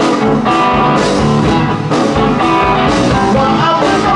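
A live trio playing: Telecaster-style electric guitar, electric bass and drum kit together.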